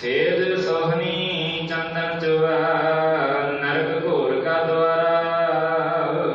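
Sikh devotional chanting (simran): long, drawn-out sung phrases, each held on a note and then sliding in pitch to the next, over a steady low drone.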